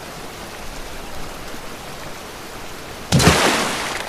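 Steady rain, an even hiss, with a louder rushing burst of noise about three seconds in that lasts just under a second.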